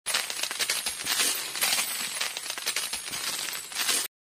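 Intro sound effect of dense, rapid metallic jingling and clicking, bright with little low end, that cuts off abruptly.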